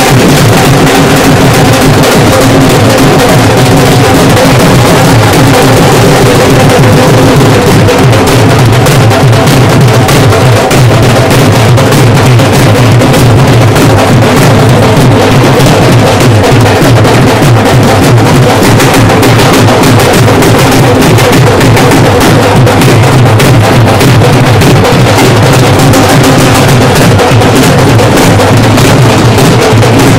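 Several dhol drums beaten together in a loud, dense, unbroken rhythm.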